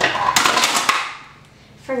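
Stacked glass food-storage containers clattering and clinking against each other as they are taken out, a burst of clatter in the first second that dies away.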